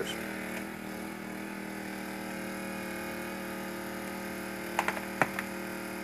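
A steady, even hum holding several fixed pitches, with a few short sharp clicks about five seconds in.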